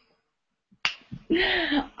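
A pause, then a single sharp snap a little under a second in, followed by a person's short laugh.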